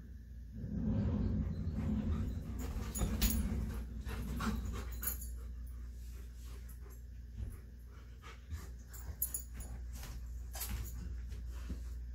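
An excited Alaskan malamute and Siberian husky panting, loudest in the first few seconds, with scattered clicks and taps from the dogs moving about.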